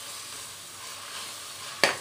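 Ground mint paste, onions and cashews sizzling in oil in a pressure cooker as a metal ladle stirs them, with one sharp clink of the ladle against the pot near the end.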